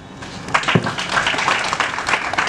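A crowd applauding, the clapping building about half a second in and continuing steadily.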